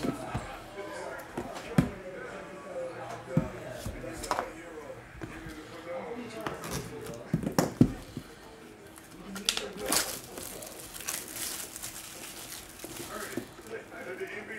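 Trading cards and card packaging handled on a tabletop: a scattered run of short taps and clicks as cards and a cardboard box are knocked and set down, with some light plastic rustling.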